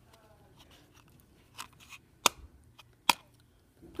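Hands handling a cardboard game spinner card with a plastic arrow, making a few sharp clicks and taps. The two loudest clicks come past the middle, less than a second apart.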